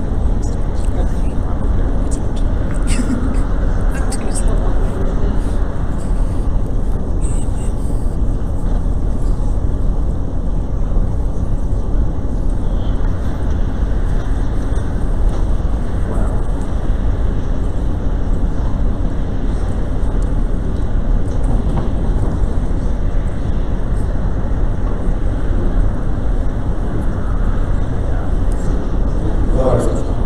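Steady low rumble of room noise in a large auditorium, with indistinct murmured conversation in the background.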